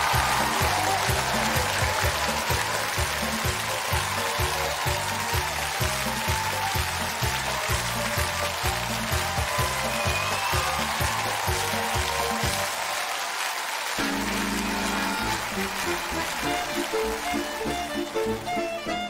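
Studio audience applauding over upbeat music with a steady bass beat; the beat drops out about 13 seconds in and the music changes a second later.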